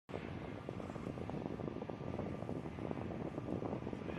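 Steady airfield background noise: the even rumble of aircraft or ground equipment running, with some wind on the microphone.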